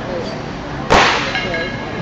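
Metal on an Olympic barbell's sleeve clanging once, sharply, about a second in, with a brief metallic ring, as loaders change the plates.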